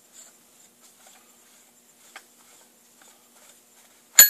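Near silence: quiet workshop room tone with a faint steady hum and a few light clicks of metal parts being handled, the clearest just past halfway.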